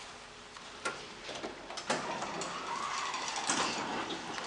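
Fujitec traction elevator's doors sliding, with two clicks about one and two seconds in followed by a steady mechanical running sound from the door operator.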